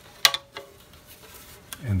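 A sharp plastic click with a brief rattle right after it, from the iMac G5's hard plastic back cover being handled.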